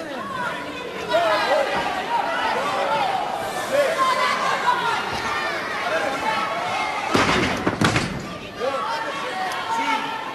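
Arena crowd shouting and calling out throughout, with a heavy thud of a wrestler's body slammed onto the ring canvas about seven seconds in. The slam is the loudest moment.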